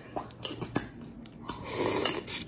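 A few light clicks of a fork against a pasta bowl, then spaghetti noodles slurped into the mouth near the end.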